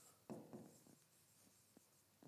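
Faint, short scratching strokes of a pen writing on a board, with a couple of tiny clicks.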